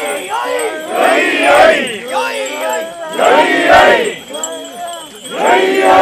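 Group of mikoshi bearers shouting a rhythmic chant together, the massed voices swelling loud about every two seconds as the portable shrine is carried.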